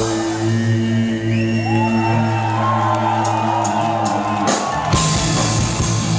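Rock band playing live through a club PA: a held chord rings on for about four seconds, then drums and guitars come in together at full volume about five seconds in.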